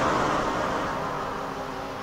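A synthesized white-noise swell in a techno track, slowly fading out with faint held synth tones beneath it.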